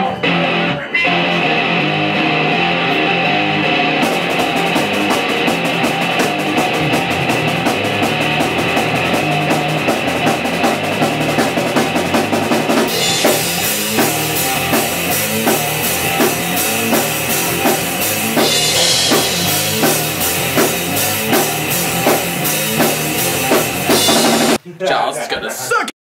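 A grunge band of electric guitar, bass guitar and drum kit playing live in a small room. The guitars start alone, the drums come in about four seconds in with a fast cymbal beat, heavier crash cymbals come in from about halfway, and the band stops a second or so before the end.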